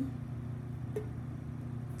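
A lump of vegan butter set into a ceramic-coated frying pan, with one faint click about a second in, over a steady low hum.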